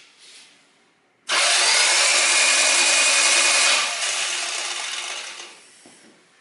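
Toyota 4A-FE four-cylinder engine turned over on its starter motor with the spark plugs removed, spinning freely to blow out the oil poured into the cylinders for a wet compression test. The steady whirring starts suddenly about a second in, then drops back and fades out over the last two seconds.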